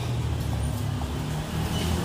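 Steady low hum of a city street: engine and traffic rumble with no distinct events.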